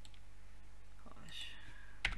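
Steady low electrical hum on a desk microphone, with one short breathy mouth sound about a second and a half in.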